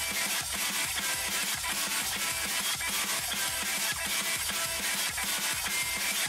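Instrumental intro of a song's backing track, electronic-sounding with a fast, steady beat and no vocals.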